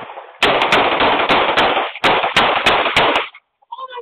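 Gunfire: an exchange of shots between two shooters, about ten shots in quick succession over some three seconds, stopping about three seconds in. It is heard through a doorbell camera's microphone, so each shot is distorted and trails into a loud echoing wash.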